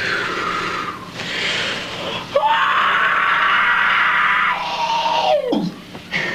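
High-pitched shouted kung-fu fighting cries: two short yells, then one long held cry whose pitch drops away near the end.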